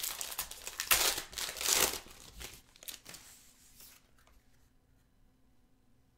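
Foil trading-card pack wrapper being torn open and crinkled in the hands, with crackling bursts loudest in the first two seconds. The handling then thins to a few faint rustles and clicks.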